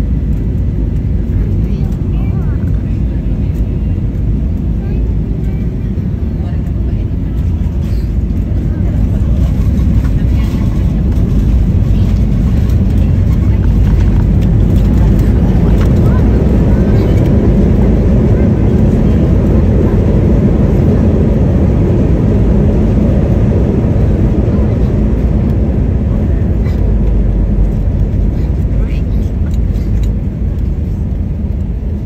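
Jet airliner cabin noise while the plane taxis on the ground: a loud, steady low rumble of engines and rolling, swelling a little midway and easing again.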